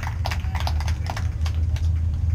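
Irregular sharp taps and clicks, several a second, over a steady low hum.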